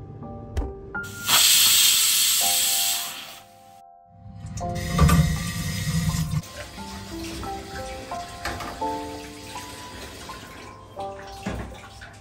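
Kitchen tap water running into a sink: a loud rush of water about a second in, lasting about two seconds, then lower splashing in the sink around five seconds in. Soft background music with slow held notes plays throughout.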